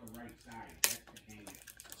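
Fingers picking at the shrink-wrap and plastic case of a CD that is hard to open: a sharp plastic click a little under a second in, with smaller ticks and faint scratching around it.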